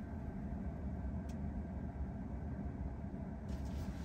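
Steady low rumble of background noise inside a Tesla Model 3 cabin, with a single faint tick about a second in.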